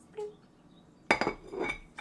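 A measuring spoon knocking against a stainless steel mixing bowl: a light tick, then two louder clinks about half a second apart, the first the loudest, each with a short metallic ring.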